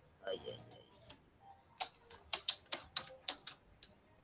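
Keyboard typing: a quick run of sharp key clicks, about four or five a second, through the second half, with a brief faint voice near the start.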